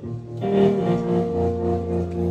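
Live band playing an instrumental stretch between sung lines: guitars and keyboard holding chords. The band swells louder about half a second in, and a low bass note joins about a second in.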